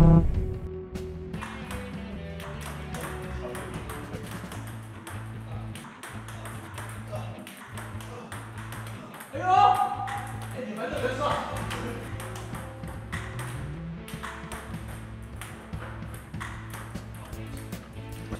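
Table tennis ball clicking repeatedly against the table and paddle during play, many quick taps, over background music with a steady low repeating bass line. A short, louder pitched sound, rising at first, comes about halfway through.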